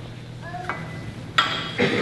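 A short rising squeak, then a sharp metallic clank and a heavier knock about half a second apart near the end, over a steady low hum.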